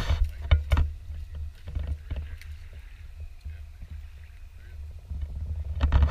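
Water sloshing and splashing as someone wades through shallow water, over a steady low rumble with scattered knocks. It is louder at the start, quieter in the middle, and swells again near the end.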